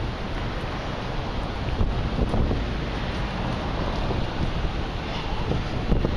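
Wind rumbling on the microphone over the steady noise of a busy pedestrian street.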